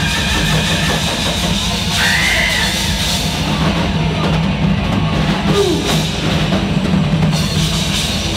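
Live rock band playing loud, with the drum kit to the fore and cymbal crashes over a held low bass and guitar note. A short sung note rises and falls about two seconds in.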